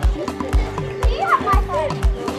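Background music with a steady beat of about two a second under a long held note, with a child's voice over it in the second half.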